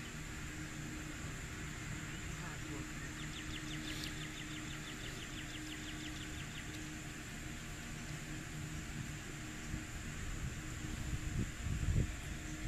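Open-air ambience with a low wind rumble on the microphone. A few seconds in, a rapid high chirping trill of about five or six notes a second runs for roughly three and a half seconds. Wind gusts buffet the microphone near the end.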